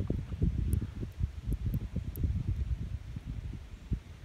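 Wind buffeting the microphone in irregular low rumbles.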